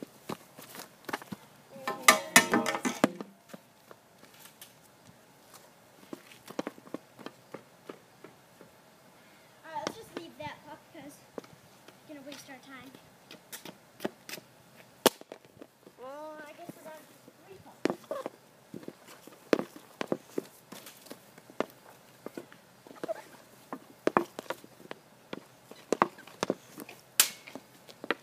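Hockey sticks shooting pucks on asphalt: sharp clacks of stick blades striking pucks and pucks hitting the goal, at irregular intervals, with a dense cluster of loud clacks about two seconds in.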